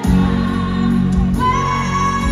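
A male singer's high voice singing a pop ballad live over full band accompaniment, which comes in louder with a heavy low end at the start. About one and a half seconds in he rises to a high note and holds it.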